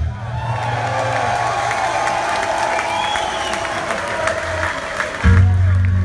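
Live hard rock band in a concert hall: the full band drops out, leaving held guitar notes over the crowd's cheering and whistles. The band comes back in with a loud low chord about five seconds in.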